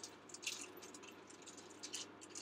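Faint rustling and a few small clicks from handling the small box of a gel eyeliner, over a low room hum.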